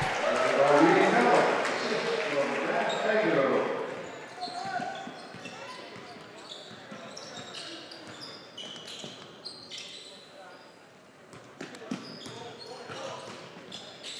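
Gym crowd cheering and chattering after a basket, fading after about four seconds. Then the quieter sound of the game takes over: sneakers squeaking on the hardwood court and a basketball bouncing.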